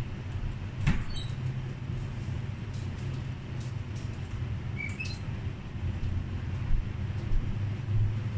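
Steady low background hum with a single knock about a second in and a couple of short, high squeaks about five seconds in.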